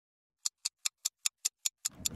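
Stopwatch ticking, a quick even run of sharp ticks at about five a second, starting about half a second in.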